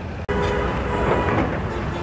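Steady rumble of diesel construction machinery and road traffic, with a brief gap about a quarter second in where the recording cuts.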